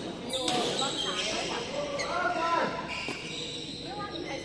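Badminton rackets striking a shuttlecock during a rally: several sharp hits, echoing in a large hall, with voices between them.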